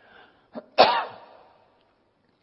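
A man coughing once, sharply, just under a second in, the sound fading within about half a second.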